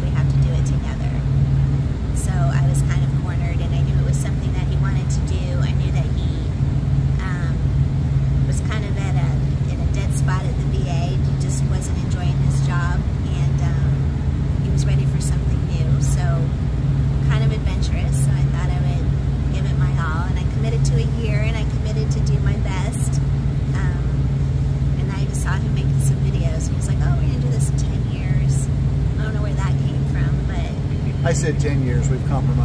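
A woman talking at length over a steady low hum.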